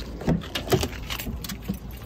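Car door opened by its outside handle: a latch click, then keys jangling and a few short knocks as the door swings open.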